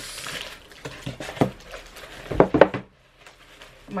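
Laptop packaging being handled as a new laptop is taken out of its box: rustling and light knocks of the moulded insert and plastic wrap, the sharpest knocks a little past halfway, then a brief quiet spell.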